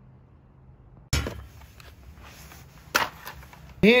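Faint room tone, then two sharp knocks about two seconds apart, the first the louder, each with a short rattling tail.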